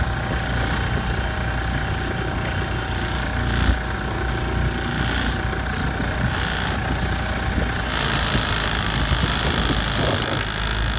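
A small sailboat's outboard motor running steadily as the boat motors along, with one brief low thump about four seconds in.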